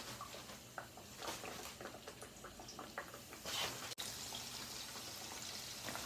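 Cornmeal-coated perch frying in hot oil in a cast iron skillet: a soft, steady sizzle with scattered small pops and crackles. A single sharp click about four seconds in.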